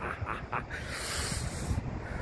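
A man's breathy laughter trailing off in a few short puffs, then a soft hissing breath, over a low rumble on the microphone.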